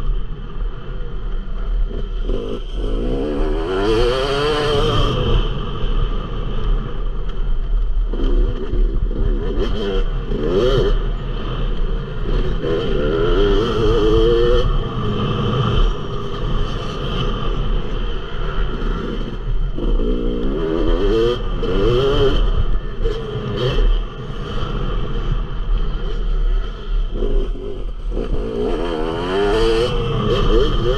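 Yamaha YZ250 motocross bike's engine revving hard and easing off again and again as it is ridden around a dirt track, heard from the bike with a steady low wind rumble on the microphone. Short knocks and clatter come through at intervals.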